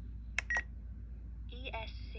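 Spektrum NX10 radio transmitter giving a click and a short beep as its scroll roller sets the ESC status report. About one and a half seconds in, the transmitter's synthesized voice starts reading out the ESC telemetry report.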